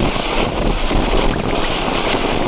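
Winda 'Toadally Purple' ground fountain firework spraying sparks, a loud, steady rushing hiss.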